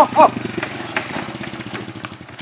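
Small motorcycle engine running as the bike slows and pulls up, its firing pulses slowing and fading.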